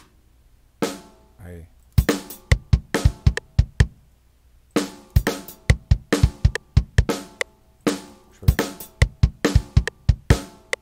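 FL Studio's FPC drum sampler with a rock drum kit playing back a programmed beat of kick, snare and closed hi-hat at 140 BPM. A couple of single drum hits come first; the beat starts about two seconds in, breaks off briefly near the middle and starts again.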